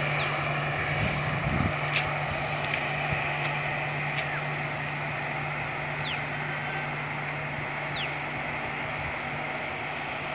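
Humsafar Express passenger train running past at low speed: a steady low hum over an even rushing noise, with a few faint clicks. Two short falling whistles sound about six and eight seconds in.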